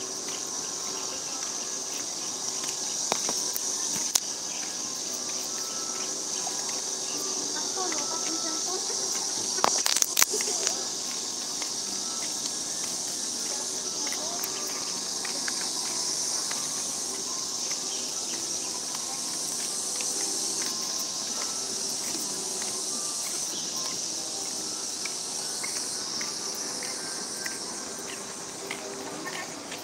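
A steady, high-pitched insect drone from the trees runs unbroken. Faint voices and a few sharp clicks sit over it, the loudest clicks about ten seconds in.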